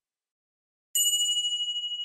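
Silence, then about a second in a single bell-like 'ding' chime sounds: the sound effect of a subscribe animation's notification bell. It has a clear high tone that rings on with a slight wobble and slowly fades.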